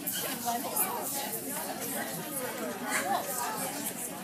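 Indistinct chatter of several people talking at once in a large indoor hall.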